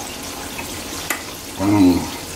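Chicken strips frying in hot oil, a steady sizzle, with one light click about a second in.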